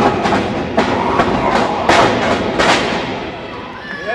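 A quick run of sharp slaps and thuds, about three a second, over a rumbling background of crowd and ring noise. They die away near the end.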